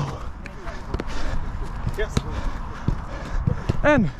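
Footballs being kicked on a grass pitch: irregular sharp knocks of boots striking the ball during a quick passing drill, with running footsteps and low rumble on a body-worn microphone.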